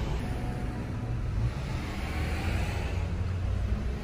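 Low, steady rumble of a car's engine and running gear heard from inside the car, which has its top down.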